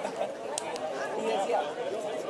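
Indistinct chatter and calls from several voices around a football pitch, no words clear.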